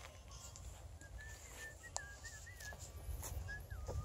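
Faint outdoor ambience: a distant bird calling in a string of short, wavering whistled notes, over a low rumble with a few soft clicks.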